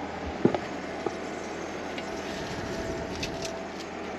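EcoFlow Wave 2 portable air conditioner running in cooling mode: a steady fan and airflow rush with a faint steady whine under it. Two light knocks come about half a second and a second in.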